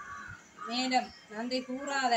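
A crow cawing several times in quick succession, starting a little over half a second in: short, harsh calls that rise and fall in pitch.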